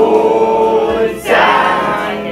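A group of voices singing together in long held notes, breaking off a bit over a second in before a new note swells up.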